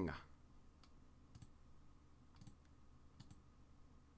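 A few faint, scattered clicks from working a computer, about a second apart, over near-silent room tone.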